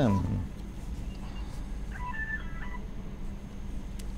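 A man's voice trailing off on a falling syllable, then a pause filled by a steady low electrical hum, with a faint, brief cluster of high tones about two seconds in.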